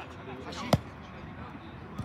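A football kicked once on an artificial-turf pitch: a single sharp thud about three-quarters of a second in, with players' voices faint behind it.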